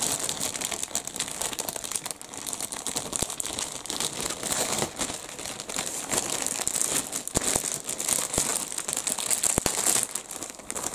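Clear plastic bags crinkling as plastic model-kit sprues are handled and pulled about in them, a continuous crackle dotted with many small sharp clicks.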